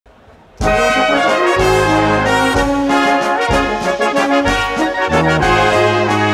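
A large brass band plays a melody over a tuba bass line with a beat, starting suddenly about half a second in. The band is a Bavarian-Austrian style wind band of trumpets, flugelhorns, tenor horns, baritones, trombones, tubas, clarinets and percussion.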